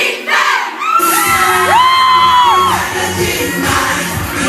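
A crowd of fans chanting and shouting together; about a second in, a loud pop track with a bass beat starts over them.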